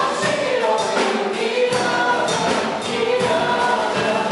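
A group of four women singing together in harmony into microphones, the voices carrying on without a break.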